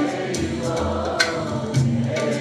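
Live band performing a Turkish folk song: long-necked saz (bağlama) and guitars over a bass line, with percussion strokes several times and a woman singing.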